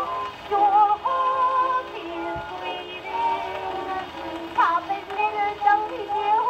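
An early acoustic-era Oxford shellac disc playing on a wind-up gramophone with a gooseneck tonearm and soundbox: a woman singing, with held, wavering notes, thin and boxy as reproduced, over a steady surface hiss.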